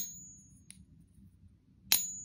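Pure copper coin held in a coin-pinging holder and struck with a wooden dowel. A high, thin ring from a tap at the start fades out within about a second, and a second tap near the end gives the same short ring. Generally, such a short ring is the mark of a high-purity metal.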